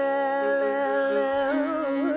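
Carnatic vocal music: a male voice holds a long, steady note, then breaks into rapid oscillating gamaka ornaments about one and a half seconds in.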